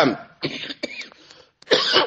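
A man's short cough about half a second in, in a pause between spoken phrases, followed by a faint click; his voice trails off at the start and resumes near the end.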